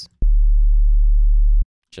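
A very big, low sine-wave bass note from the Serum software synth, with the sub oscillator and sine waves on oscillators A and B stacked. It is held steady for about a second and a half and starts and stops with a slight click.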